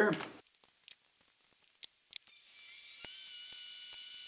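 A few faint, sharp clicks of small metal and plastic parts being handled on a workbench. After them comes a steady, faint high hiss with a thin whine from about two seconds in.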